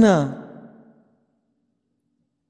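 A man's reading voice ending a phrase, its pitch falling as it trails off within the first second, followed by silence.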